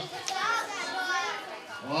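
Young children's voices chattering and calling out over one another as a group of children shuffles into place.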